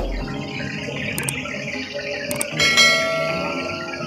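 Bell-like ringing tones with a couple of brief clinks, and a stronger ring about two and a half seconds in.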